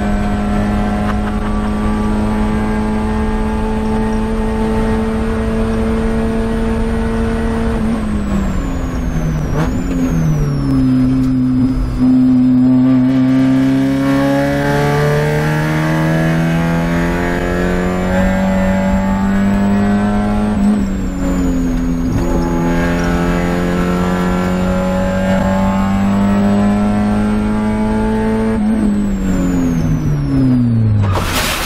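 Spec Miata race car's four-cylinder engine heard from inside the cockpit. It holds steady at high revs, then falls in pitch about eight seconds in as the car slows for a corner. It then climbs slowly as the car accelerates out, and falls steadily again near the end as the car brakes once more.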